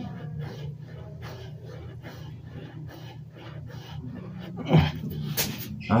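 A man panting hard from exertion during a set of push-ups, in quick, even breaths about two to three a second. Near the end come a couple of louder, heavier breaths.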